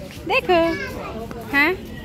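A small child's high-pitched voice: two short calls or babbles, about half a second in and again near the end, with no clear words.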